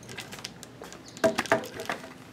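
A few faint plastic clicks, then two or three louder short taps a little past halfway: the small plastic cover over the hidden key cylinder on the door handle being pressed home to check that it has snapped back in.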